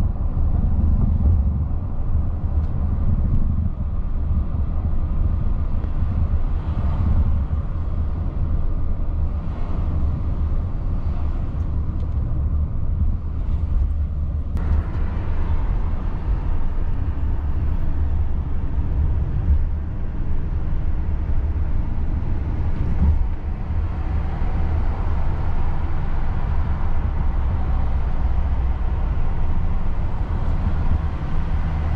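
Steady road noise inside a moving car: a low rumble of engine and tyres on the road, with a hiss that grows brighter a little past halfway.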